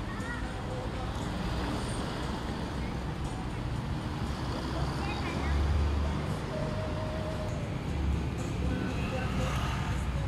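Busy outdoor town-square ambience: steady traffic noise with faint distant voices. A couple of louder low rumbles come about halfway through and again near the end.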